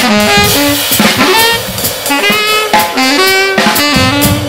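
Tenor saxophone playing a jazz line of short notes stepping up and down over a drum kit with cymbals.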